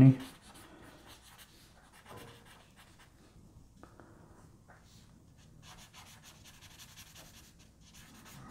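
Paper blending stump rubbing graphite shading into drawing paper: faint scratchy rubbing strokes that pause near the middle and start again in the second half.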